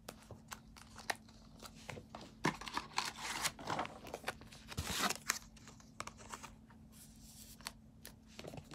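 Plastic trading-card sleeves (Dragon Shield) rustling and crinkling faintly as cards are slid into them, with small handling clicks. The longest rustles come about two and a half to three and a half seconds in and again around five seconds in.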